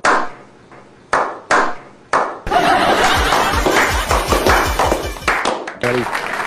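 Four slow, single hand claps that ring out, then music with a regular low beat starts about two and a half seconds in and stops shortly before the end.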